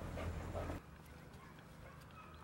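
A dog whimpering faintly over a low rumble; the rumble drops away abruptly under a second in, leaving a quieter stretch with faint high whines.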